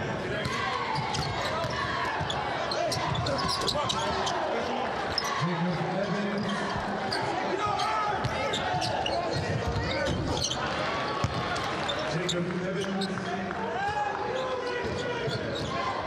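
Basketball being dribbled on a hardwood court, its bounces heard as sharp knocks over the steady chatter of an arena crowd.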